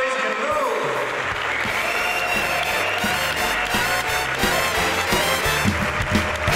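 Applause tailing off as an instrumental accompaniment starts about a second in: a stepping bass line with a steady beat and a held upper note.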